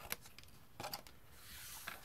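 Small paper-craft scissors snipping cardstock: a short snip just after the start and a quick cluster of clicks about a second in, then a soft rustle of the card being moved near the end.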